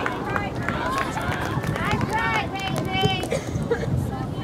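Indistinct shouts and calls from girls' soccer players and sideline spectators, several short calls over general outdoor noise.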